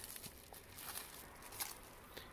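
Faint, light crinkling of a plastic bubble-wrap bag being handled as a small touchscreen board is slid out of it; a few soft rustles.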